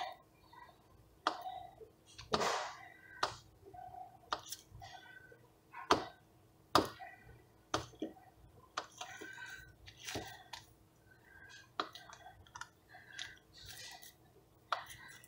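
A small knife cutting a block of butter into pieces on its paper wrapper: irregular sharp clicks and taps as the blade presses through and meets the counter.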